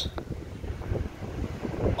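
Wind buffeting the microphone: an uneven low rumble.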